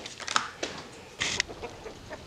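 Chickens clucking faintly, a few short calls.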